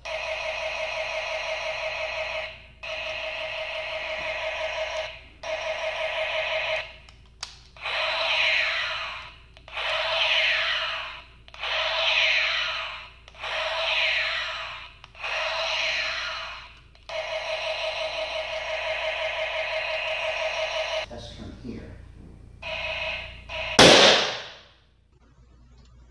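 Electronic firing sounds of a Playmates Star Trek: The Next Generation Type II toy phaser, played through its small built-in speaker. It gives three steady buzzing beam bursts, then five falling, warbling sweeps about two seconds apart, then a longer steady burst and a short one. A single sharp, loud bang comes near the end.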